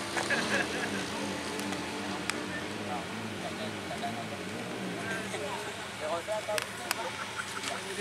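Distant drag-racing motorcycles running away down the strip: a steady engine note that drops slightly in pitch and dies away about three seconds in, over a background murmur of crowd voices.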